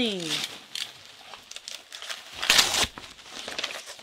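A mailed package being opened by hand: its wrapping crinkles and crackles irregularly, with one loud tear about two and a half seconds in.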